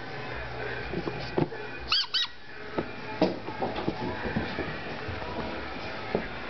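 Two quick high-pitched squeaks, about a fifth of a second apart, about two seconds in, amid soft knocks and rustling as dogs play with toys.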